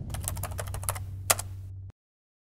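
Typing sound effect: a quick run of about ten key clicks, the loudest near the end, over a low rumble that fades and then cuts off suddenly just before the end.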